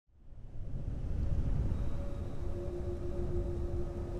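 Low, rumbling cinematic drone that fades in over the first half second and holds steady, with a faint sustained tone above it: trailer opening sound design.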